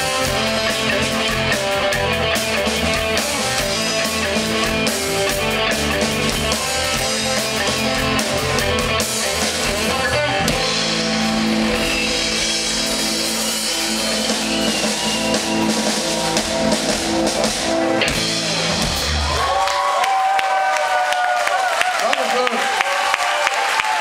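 Live rock band with electric guitar, bass guitar, drum kit and keyboards playing loudly through a PA. Near the end the drums and bass stop as the song finishes, leaving only higher wavering sounds.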